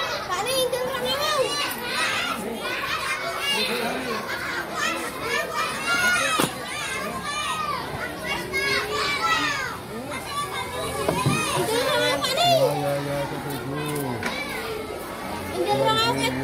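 Many schoolchildren's voices chattering and calling out at once, a steady overlapping hubbub.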